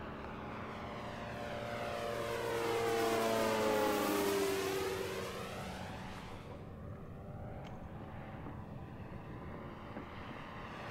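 Electric-powered Legend Hobby 86-inch A-1 Skyraider RC warbird with a 20x14 propeller making a low fly-by. The propeller drone grows louder to a peak about three to four seconds in, drops in pitch as the plane passes, and fades.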